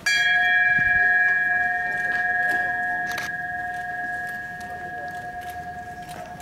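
A large bell struck once at the start and left to ring out, its tone dying away slowly with a gentle waver.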